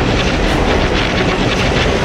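Sound-designed effect for a swirling magic portal: a loud, dense rushing noise with a rapid fluttering crackle.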